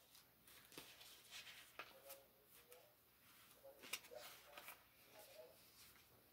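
Near silence, with a few faint, scattered clicks and rustles of paper being handled; the loudest comes about four seconds in.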